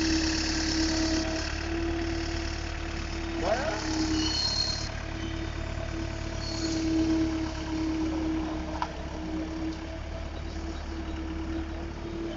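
XGMA skid steer loader's diesel engine running steadily as the loader drives and turns, with a steady tone over it that swells and fades.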